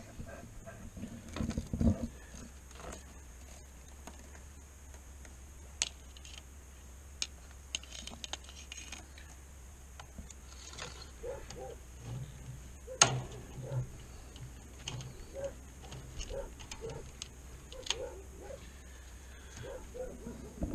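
Steel fence wire being threaded through staples on wooden brace posts: soft scraping and rattling of the wire with a few sharp clicks, the clearest about 13 seconds in, and a low bump about two seconds in.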